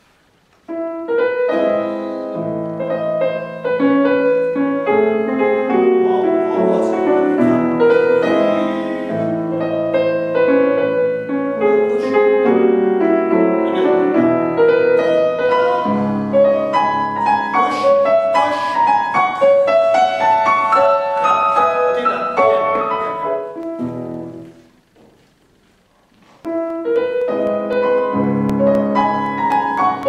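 Grand piano playing a classical piece, starting about a second in, dying away a few seconds before the end and then starting again.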